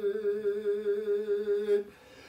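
An elderly man singing an unaccompanied Kurdish folk song, holding one long note with an even wavering quaver. The note breaks off just before the end.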